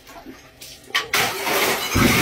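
A sudden crash about a second in, then a continuing clatter and rumble: a swinging ceramic toilet strikes a stacked column of plastic barrels, which topple.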